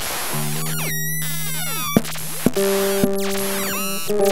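Free improvised electroacoustic music from electric guitar and live electronics with modular synth. Held electronic tones change pitch partway through, pitch sweeps glide up and down over a hiss of noise, and a few sharp clicks cut in about two seconds in.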